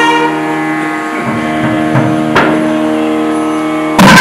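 Nadaswaram holding a long, steady note without drum accompaniment, with one short click a little past halfway.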